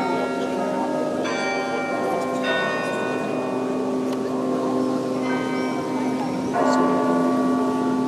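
Carillon bells of Halle's Roter Turm played from the baton keyboard: four struck chords about a second in, at two and a half, about five and about six and a half seconds, each ringing on over a steady low hum, the last the loudest.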